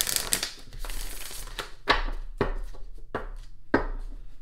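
Deck of tarot cards being shuffled by hand: a rush of riffling for the first second and a half, then several sharp slaps as the cards are cut and tapped together.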